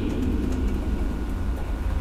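Steady low rumble, even in level, with no other distinct sound.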